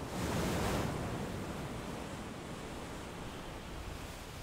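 Rushing noise of rough sea and wind, swelling just after the start and then slowly fading.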